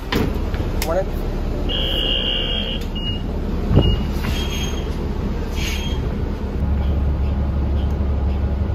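City transit bus engine running with a low, steady rumble that grows louder about six and a half seconds in. About two seconds in, the farebox gives one steady beep of about a second, followed by two short beeps and a thump.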